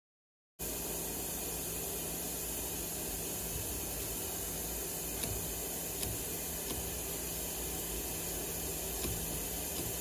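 Steady hiss of background noise, cutting in abruptly about half a second in, with a few faint clicks scattered through it.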